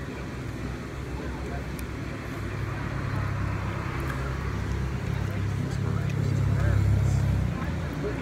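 A motor vehicle passing nearby: a low engine rumble that builds over several seconds, peaks near the end and then fades.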